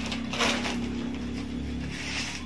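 Dry corn husks being torn off a cob by hand: crackly rustling tears, loudest about half a second in, over a steady low hum.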